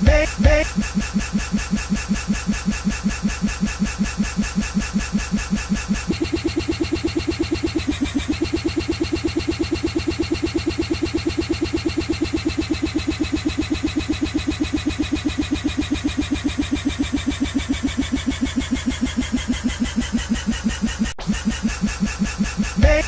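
A tiny slice of a song looped over and over in the edjing DJ app, making a fast, even stutter. About six seconds in the repeats come faster, and over the following seconds the pitch slowly sinks before the loop breaks off near the end.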